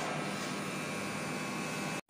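Roll-to-roll heat transfer sublimation machine running, a steady mechanical whir with a faint hum.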